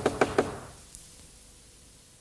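A quick series of three or four knocks on a wooden door in the first half second, then a faint tick about a second in.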